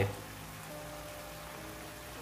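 Steady sizzle of squid and artichokes cooking in oil and white wine in a frying pan, with faint background music.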